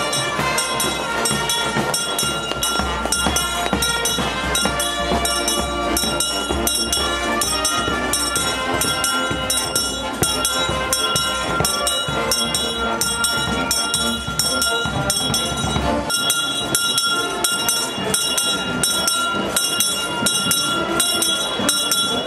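Brass band music playing, with long held chords over a steady beat.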